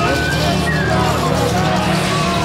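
A spiritual jazz band plays a high melody line of held notes that step and slide in pitch, over a steady low bass.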